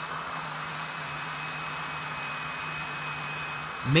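ZOpid HP-ZV180B battery-operated mini desktop vacuum cleaner running steadily: its small motor and fan give a low hum and a thin high whine over a rush of air.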